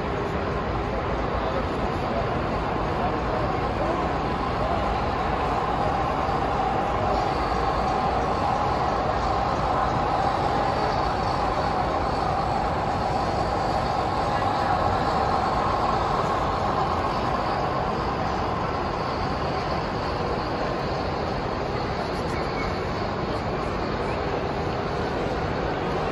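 Model train running along the layout track, its wheels and motors making a steady rumble that grows a little louder around the middle as the locomotives pass close, over the chatter of a crowded exhibition hall.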